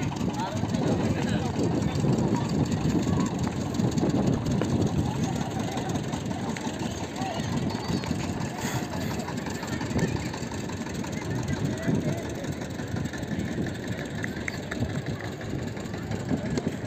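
Steady rumbling noise on a moving phone's microphone, typical of wind and handling while jogging, with people's voices in the background.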